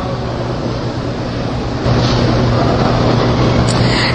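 Steady background hiss with a constant low hum, stepping up louder and brighter about two seconds in.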